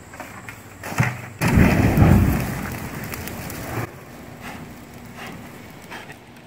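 Gasoline dumped from a bucket onto a burning printer catching fire in a loud whoosh: a sharp knock about a second in, then a deep rushing burst that fades away over about two seconds.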